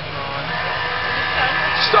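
Engines of Trabant stock cars running as they race around a dirt track, a steady mechanical drone from several cars together.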